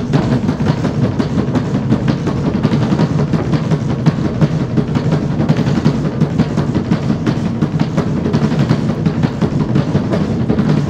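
A tribal drum band playing: several large shoulder-slung drums and a painted frame drum struck with a padded beater, beaten together in a dense, driving rhythm without a break.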